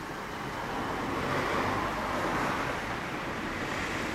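The air-cooled inline-four of a 1996 Kawasaki Zephyr 1100RS with a BEET Nassert aftermarket exhaust, running steadily. A rushing noise swells about a second in.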